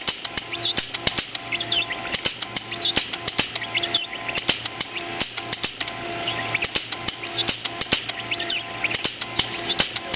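MakerBot 3D printer with a Frostruder frosting syringe printing: its stepper motors whir in short moves that repeat in a steady rhythm, over rapid clicking.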